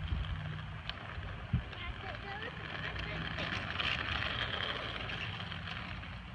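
Hard plastic wheels of a child's big-wheel trike rolling and scraping over asphalt, a steady gritty noise that grows louder about halfway through as the trike circles closer, with one brief knock about a second and a half in.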